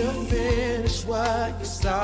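Gospel-style singing with wavering vibrato runs over backing music with a steady drum beat.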